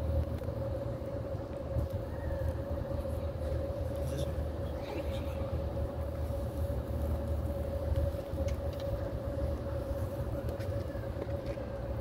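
Open-air ambience: a low rumble of wind on a phone microphone, with a steady mid-pitched hum running under it.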